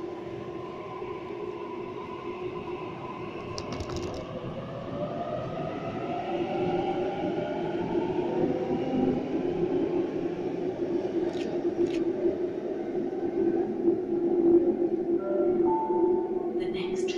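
A Sydney Trains Tangara electric train pulls out of the platform. It makes a steady motor hum, and a whine climbs in pitch as it accelerates. There are a few brief clicks.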